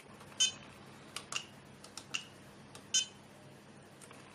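ISDT BG-8S battery checker beeping as its buttons are pressed to start cell balancing: a short beep about half a second in and another near three seconds, with several fainter clicks and ticks between.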